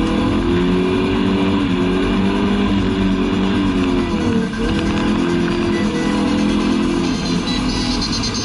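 The 2.3-litre four-cylinder engine of a 1988 Volvo 740, heard from inside the cabin, held at high revs during a drift. The pitch dips and climbs back about four and a half seconds in, and drops again near the end. Music is playing in the cabin.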